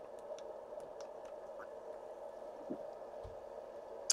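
Quiet sips and swallows from a plastic bottle of sparkling water: a few faint small clicks over a steady low hum, with a soft low knock about three seconds in.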